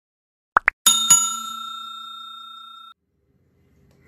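Like-and-subscribe animation sound effect: two quick rising pops, then a bell struck twice in quick succession that rings out, fading, for about two seconds before cutting off suddenly.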